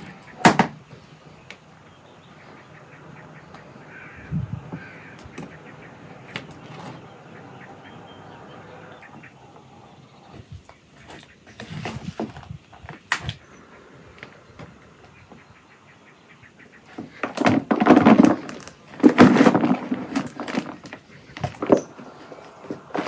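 Hands mixing flower seeds with clay, soil and water in plastic bowls: scattered knocks and scrapes, then a few seconds of louder, busier handling near the end.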